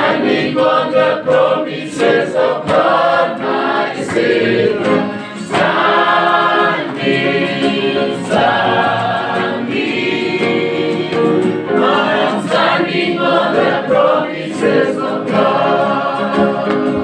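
A choir singing gospel music.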